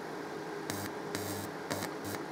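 Small feathery RF arc at the wire tip of a homemade 10 MHz plasma flame generator, hissing faintly with three or four brief louder sputters about half a second apart. It is a weak arc that fails to form a plasma flame.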